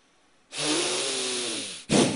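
Forceful yogic breathing blown close into a handheld microphone: a loud breath starting about half a second in and lasting over a second, then a sharp burst of breath near the end.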